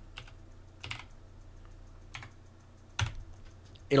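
A handful of separate keystrokes on a computer keyboard, the loudest about three seconds in.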